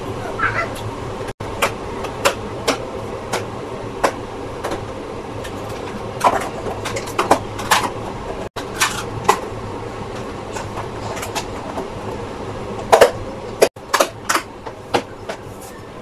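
Plastic food containers and their snap-lock lids clicking and knocking as they are handled, set down and closed, over a steady background hum.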